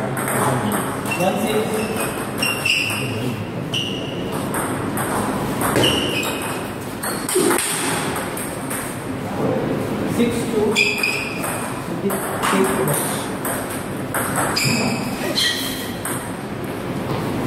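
Table tennis balls clicking off bats and tables in short, irregular runs of quick strokes. Rallies are going on at more than one table at once.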